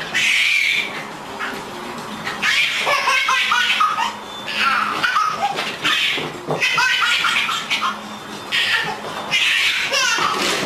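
A baby laughing in repeated high-pitched bursts, about every one to two seconds.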